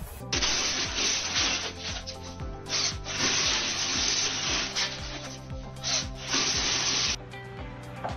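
Dried corn cobs being forced through a hand-made sheller ring, kernels scraping off in several long strokes with short breaks between them, over background music.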